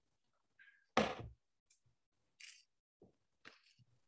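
Handling noise from a leather-hard earthenware pot being worked by hand: one dull thump about a second in, then a few soft, short scrapes and rustles.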